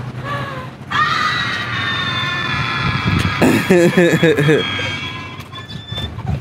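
A woman's long, high-pitched squeal of excitement, held steady for about four seconds, with another voice breaking in about halfway through.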